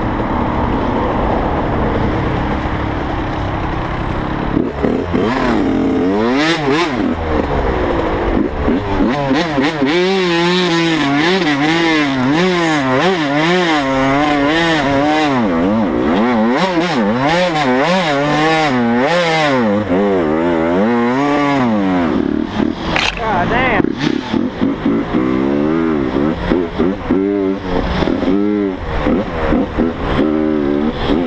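Dirt bike engine revving up and down in quick surges while climbing a steep dirt hill, its pitch rising and falling about every half second. The running turns rougher and choppier near the end.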